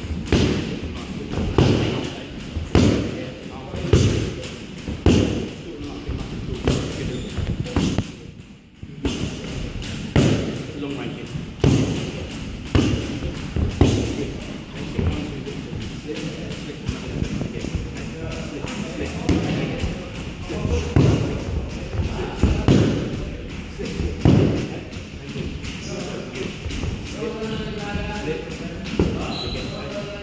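Boxing gloves punching focus mitts: a series of sharp thuds, roughly one a second, with a short break about eight seconds in.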